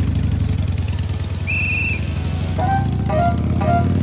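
Background music for a scene change: a low pulsing rumble, then a brief high whistle-like note, then a light melody coming in about halfway through.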